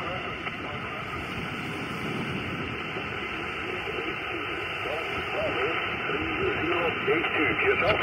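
Xiegu G90 HF transceiver's speaker giving out a weak single-sideband voice from a distant amateur station, barely above a steady hiss of band static.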